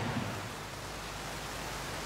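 Fountain jets spraying and splashing into a pool: a steady hiss of falling water.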